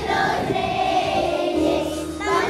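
A group of young children singing a Christmas song together in chorus, with musical accompaniment.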